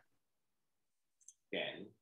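Near silence broken by one faint, short click a little over a second in, then a voice begins speaking briefly near the end.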